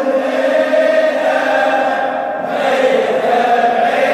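A crowd of men chanting a Shia mourning refrain (latmiyya) together in unison, a thick blend of many voices in place of the single vibrato-laden solo voice heard just before.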